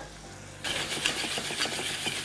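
Pulled turkey and parsley sizzling in a hot stainless skillet as a metal spoon stirs them, the sizzle and scraping starting about half a second in.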